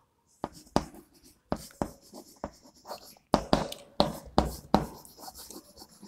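Chalk writing on a chalkboard: a run of short, sharp taps and scratchy strokes as a word is written out.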